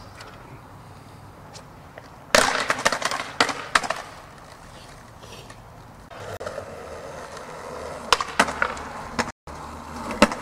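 Skateboard on concrete: a cluster of loud clacks and knocks from the board hitting the ground about two seconds in, then wheels rolling on concrete with a few sharp clacks near the end.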